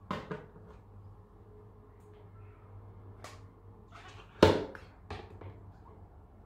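A few sharp knocks and clicks from a smartphone being handled and pushed down into a plastic jug of water. The loudest hit comes about four and a half seconds in, with two smaller ones just after it.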